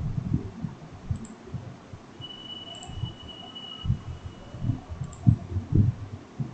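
Irregular clicks and light thumps of a computer mouse and keyboard as the presenter works through screens on the computer, the loudest few near the end.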